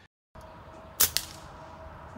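Brocock Commander PCP air rifle firing a single shot: a sharp crack about a second in, followed right after by a second, slightly quieter crack.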